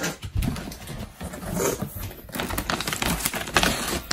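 Cardboard box and paper being handled: rustling and crackling with scattered clicks and knocks as the box's flaps are opened and a paper instruction sheet is pulled out.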